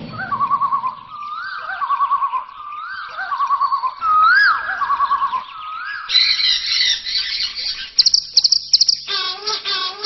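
Bird calls: a whistled phrase, a rising whistle followed by a quick trill, repeated about four times, then denser, higher chirping and a fast run of sharp high notes in the second half.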